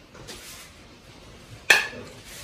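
A single sharp clink of an eating utensil against a dish near the end, with a brief ring after it, over faint room noise.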